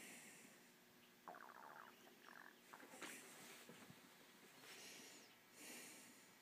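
Near silence: room tone with a few faint, brief rustling sounds.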